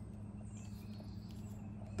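A quiet pause filled by a low steady hum and faint background noise, with no distinct sound.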